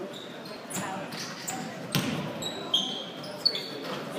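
A basketball bouncing on a hardwood gym floor, with a few separate thuds, and short high sneaker squeaks in the second half, over a low background of voices in a large gym.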